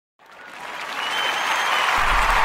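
Crowd applause fading in from silence and growing steadily louder, with a faint brief whistle about a second in.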